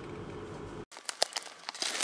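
Steady engine and road hum heard from inside a vehicle on a dirt forest road, cut off abruptly just under a second in. Then scattered sharp clicks and crackles of steps through twigs and dry forest litter.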